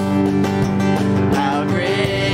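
Live worship band music: strummed guitar and drum kit playing between sung lines, with a singer's voice coming back in near the end.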